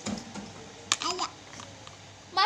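A sharp click just under a second in, followed by a brief young child's vocal sound.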